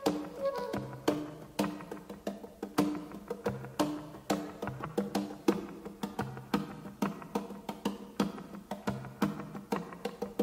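Funk band playing an instrumental passage with no vocals: a steady percussion beat of about two strikes a second over a repeating bass line.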